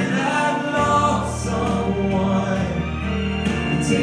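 Gospel vocal group singing in harmony over keyboard accompaniment, with a low sustained bass note coming in about a second in.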